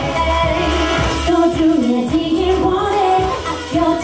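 K-pop dance-pop song with a woman singing over a steady pulsing bass beat and percussion.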